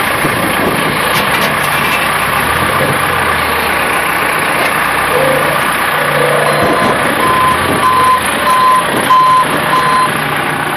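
Forklift engine running steadily; about two-thirds of the way in, its reversing beeper starts, beeping about twice a second as the forklift backs up.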